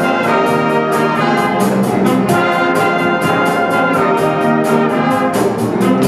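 High school jazz big band playing: trumpets, trombones and saxophones sounding together over a steady cymbal beat.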